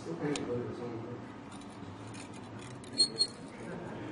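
Two sharp, short clinks about three seconds in, a quarter second apart, with a brief high ring: small hard parts knocking together as components are handled on a circuit board. Faint voices murmur in the background.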